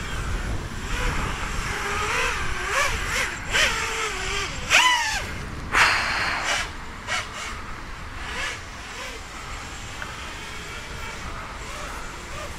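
Emax Hawk 5 racing quadcopter's brushless motors and propellers whining in flight on a 4S battery, the pitch rising and falling with the throttle. A loud falling sweep comes about five seconds in, and the sound settles quieter over the last few seconds.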